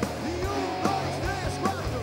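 Live rock band playing, with a drum kit keeping a steady beat under pitched lines that bend up and down.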